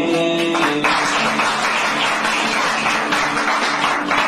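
Live Sudanese song ending on plucked-string notes, with audience applause breaking out about a second in and continuing over the last held notes.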